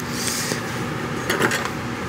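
Steady background hum and hiss of a repair shop, with a brief high hiss near the start and a few light clicks and clatter about a second and a half in.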